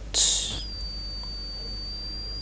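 Small vacuum-tube Tesla coil (VTTC), tuned down toward 320 kHz, giving a brief hiss and then a steady high-pitched whistle from about half a second in. It is a weird noise: the sign that the coil doesn't like running at this low a frequency.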